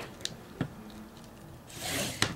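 Hands handling a plastic page protector on a sliding-blade paper trimmer: a couple of light taps, then a scraping rustle that swells near the end.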